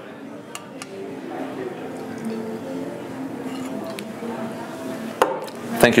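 Fresh lime juice poured from a stainless steel shaker tin into a glass shot glass: a thin, steady trickle lasting about four seconds, with a couple of light clicks near the start and a single knock near the end.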